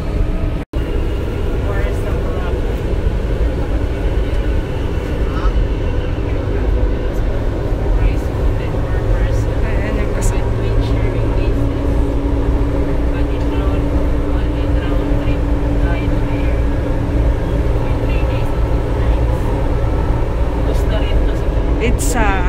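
Cabin noise of a Manila MRT light rail train under way: a steady low rumble, with a steady hum joining in for several seconds mid-way. The sound cuts out for an instant just under a second in.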